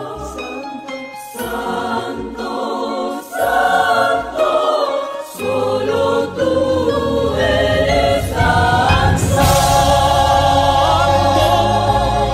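Christian worship song sung by a choir over instrumental accompaniment. A bass comes in about halfway, and the music swells louder and fuller near the end, with voices held with vibrato.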